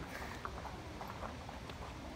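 Faint outdoor background of distant voices, with a few soft knocks.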